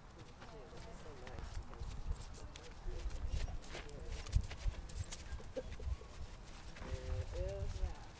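A horse's hooves thudding on the dirt footing of an arena as it walks past, with people talking in the background.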